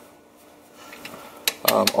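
Light metallic clinks from a small socket wrench on the rear drive unit's drain plug as it is run back in by hand, the sharpest click about one and a half seconds in.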